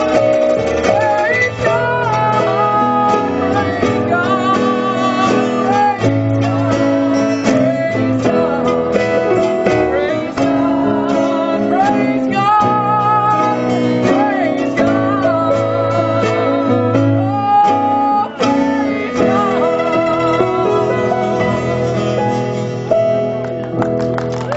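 Live gospel song: a woman singing with vibrato over acoustic guitar and electric keyboard accompaniment.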